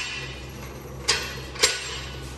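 Two short metallic clinks about half a second apart from a floor jack being worked under the car's front end, over a steady low hum.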